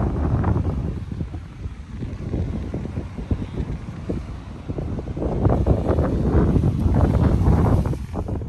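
Wind buffeting the microphone in gusts: loud noise that eases a second or so in and picks up strongly again after about five seconds.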